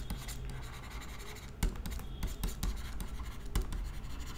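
A stylus writing on a pen tablet: light scratching strokes broken by several sharp taps of the pen tip.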